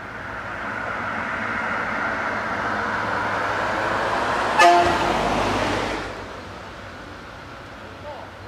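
Ferkeltaxi railbus (DR class 772) diesel engine running up under throttle as the railcar pulls away. A short horn toot sounds a little past halfway, and the engine sound drops back at about six seconds.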